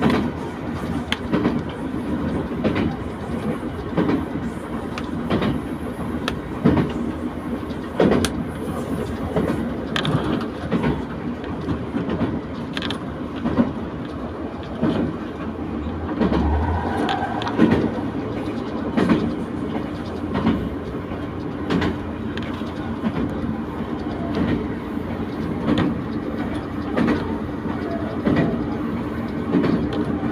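A local diesel railcar running at speed, heard from inside the passenger cabin: a steady rumble of running noise with irregular wheel clicks over the rail joints every second or two.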